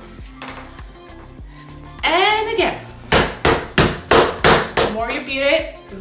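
A wooden rolling pin beating a ball of faworki dough on a wooden pastry board: about seven sharp strikes, roughly three a second, in the second half. The beating works air into the dough so the fried pastries come out airy and crunchy. Soft background music runs underneath.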